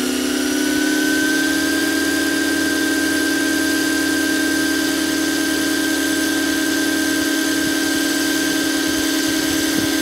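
Electric motor and rotors of a radio-controlled Pave Hawk scale helicopter spooling up on the ground. The whine rises in pitch over about the first second, then holds steady at head speed.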